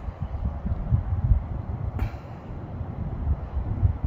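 Low, uneven rumbling noise on the microphone, with one sharp click about two seconds in.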